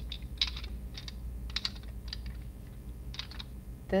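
Glass nail polish bottles clicking against one another as they are set down and pushed together into rows: a few scattered clusters of light clicks.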